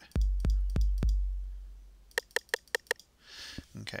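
808 kick drum from Ableton Live's Kit-Core 808 rack, auditioned four times about a third of a second apart. Each hit is a deep boom, and the last one rings out and fades over about a second. About two seconds in come roughly six quick, short, higher-pitched drum-machine hits in a fast run.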